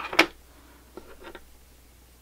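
Scissors snipping through cotton yarn: two quick, sharp snips at the start, followed about a second later by a couple of faint ticks.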